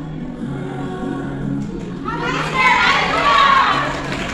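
Recorded music playing with sustained low notes, then about halfway through many voices come in at once, shouting and cheering loudly over it as the dance ends.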